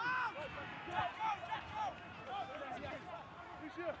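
Several men's voices shouting short, wordless calls on the pitch as a tackle goes to ground and a ruck forms.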